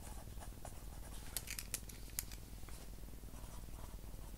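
A pen writing on squared paper: light scratching strokes with short pauses between them.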